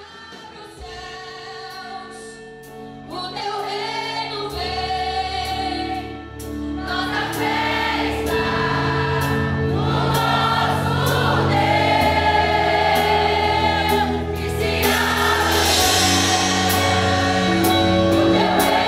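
A young congregation singing a gospel worship song together as a choir, over steady sustained bass notes. The singing grows louder over the first several seconds, then holds.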